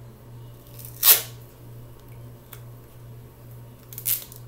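A piece of gray tape ripped from the roll: one short, sharp rip about a second in, then a faint click, over a low steady hum.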